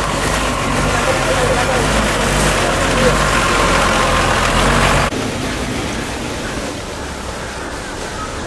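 Tata bus's diesel engine running as the bus creeps slowly past at close range, a steady low engine note. It cuts off abruptly about five seconds in, leaving quieter outdoor sound with voices.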